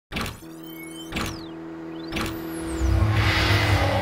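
Channel intro logo sting: three sharp hits about a second apart, each with a sweeping whoosh, over a held tone, building into a deep low rumble near the end.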